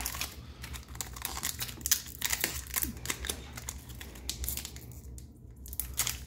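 Foil Pokémon booster pack crinkling and crackling in the hands as it is drawn out of its cardboard booster box, with irregular clicks and light taps, easing off briefly shortly before the end.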